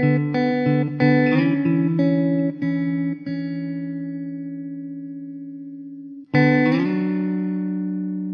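Background music led by guitar: a run of plucked notes and chords over the first three seconds, then one chord left ringing and slowly fading, and a new chord struck about six seconds in.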